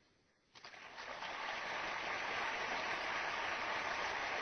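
Audience applause, starting about half a second in and building within a second to steady clapping at the end of a lecture.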